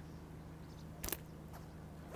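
A bait catapult fired once to loose-feed the far line: a single short snap about a second in, over a faint, steady low hum.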